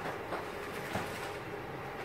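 Steady low background room noise with a faint hum, and a couple of faint clicks.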